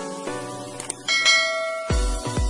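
Light intro music with a short click, then a bright bell chime about a second in that rings for most of a second: the notification-bell sound effect of a subscribe animation.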